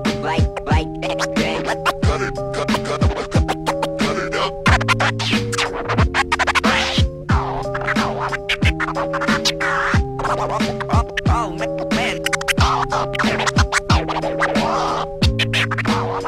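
Turntable scratching over a looped beat, with held synth notes and a low kick drum about once a second.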